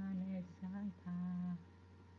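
A single voice chanting a verse in slow, drawn-out notes, three long held notes in the first second and a half, then a pause, heard over a voice-chat connection.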